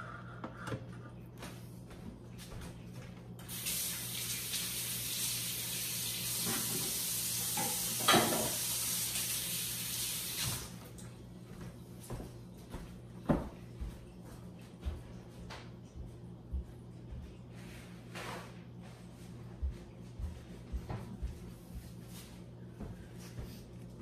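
Water running from a tap for about seven seconds, starting a few seconds in, then scattered light knocks and clicks, over a low steady hum.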